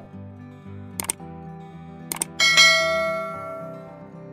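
Light background music with two quick double mouse clicks, about one and two seconds in, then a bright bell ding that rings and fades over about a second. These are the sound effects of a subscribe-button and notification-bell animation.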